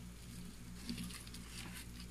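Faint rustling and a few light clicks from cardboard egg-crate pieces being moved by hand inside a plastic dubia roach tub, over a steady low hum.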